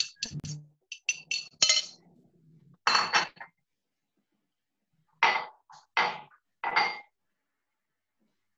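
Spoon and cup clinking, as when stirring coffee: a quick run of light ringing clinks, then three louder clinks spaced under a second apart.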